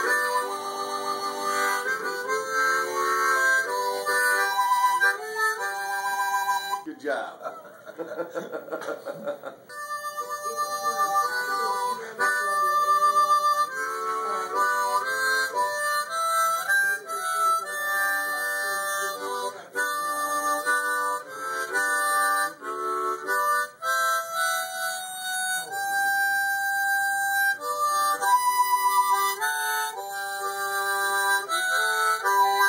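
Solo harmonica playing a tune in held and changing notes, with a quieter wavering passage about seven seconds in.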